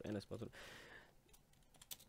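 Computer keyboard keys clicking, a few quick presses in the second half, after a man's voice that stops about half a second in.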